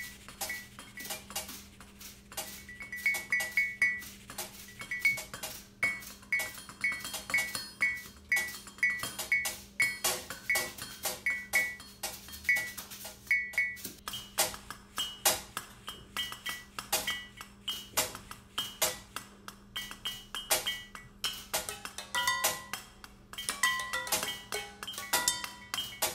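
Percussion ensemble playing kitchen objects: drinking glasses and cups struck with a mallet give short ringing clinks in a steady rhythm. From about halfway the rhythm grows busier, with the clatter of pot lids, plates and metal utensils joining in.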